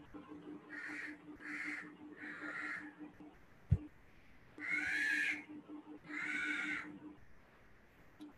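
An animal calling five times in short calls of about half a second, three in quick succession near the start and two louder, longer ones in the second half. A single sharp click comes near the middle, over a faint steady low hum.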